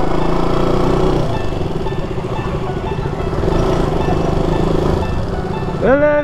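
Sport motorcycle's engine running at low speed in city traffic, heard from the rider's handlebar-mounted microphone with wind noise, under background music.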